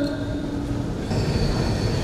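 A Quran reciter's long chanted note fading out about a second in, followed by a steady low rumble of hall noise in the pause between verses.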